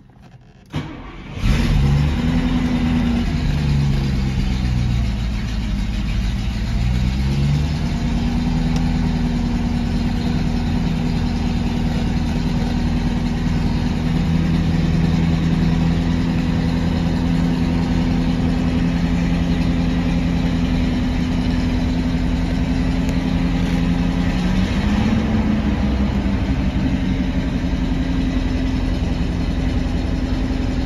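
Mercedes 450 SL 4.5-litre V8 engine cold-started: a brief crank, then it catches about a second in. Its speed rises, hunts up and down for a few seconds and settles into a steady fast idle, with one small rise in speed near the end.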